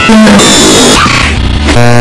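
Loud, chaotic jumble of music and cartoon sound effects from an edited anime soundtrack, ending with a brief buzzing tone.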